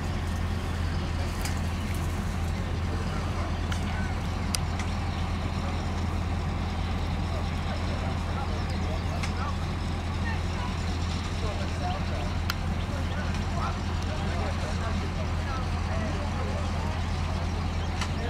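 Steady low drone of a heavy vehicle engine running at idle, with men's voices talking in the background and a few faint sharp cracks.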